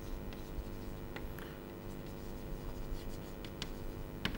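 Chalk writing on a blackboard: a string of sharp taps and short scratchy strokes at irregular intervals as a word is written out.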